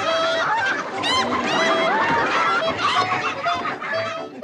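A flock of chickens clucking and squawking all at once, loud and dense, with several sharp rising squawks about a second in.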